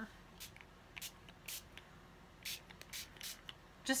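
Water mister bottle spritzing in a series of short hissy sprays, about six of them spread irregularly across the few seconds, misting water lightly onto paper inked with Distress Oxide.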